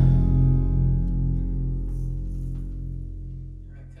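Final chord on acoustic and electric guitars left ringing, fading away steadily to near nothing.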